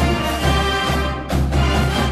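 Marching band music, dense and steady, with a brief drop a little over a second in before it carries on.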